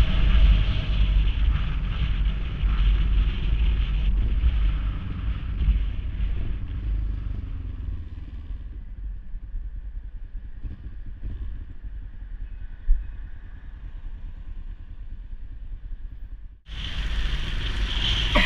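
Motorcycle riding in city traffic, heard from a bike-mounted action camera: engine rumble with wind noise on the microphone, growing quieter from about the middle as the bike slows behind traffic. A single sharp click comes about 13 seconds in, and near the end the sound cuts abruptly back to louder engine and wind.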